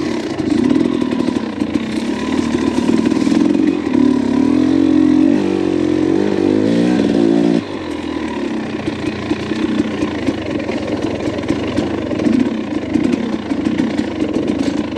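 Dirt bike engine running under a rider on rough single-track, the revs rising and falling in a run of up-and-down pitch glides, then dropping back sharply about halfway through to a lower, uneven running note.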